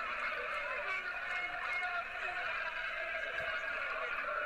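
Steady background murmur of distant voices in the open-air ground ambience, with no single loud event.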